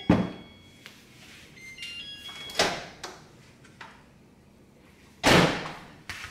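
Kitchen items being handled on a counter: a sharp knock at the start, another clatter about two and a half seconds in, and a louder, longer clatter about five seconds in.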